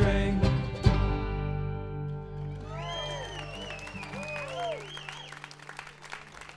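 An acoustic folk band (banjo, acoustic guitar, upright bass) ends a song on a final chord struck about a second in, which rings on and fades. Cheers from the audience rise over it, and clapping starts near the end.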